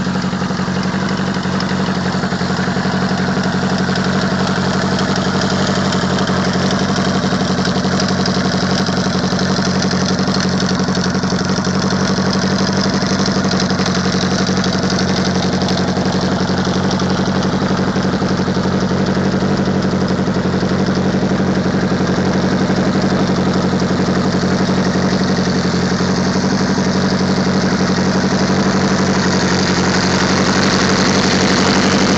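1982 Honda flat-four motorcycle engine idling steadily, its even note holding without revs or change.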